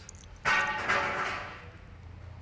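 A dog's whining cry, starting about half a second in and fading out over about a second. It comes from a dog lying restrained with its legs strapped in hobbles.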